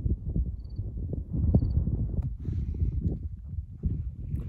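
Wind buffeting the phone's microphone: an uneven, gusty low rumble with many small thumps.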